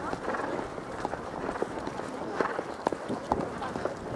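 Hoofbeats of several ridden horses moving over a soft stubble field, a busy run of irregular thuds and knocks, with riders' voices in the background.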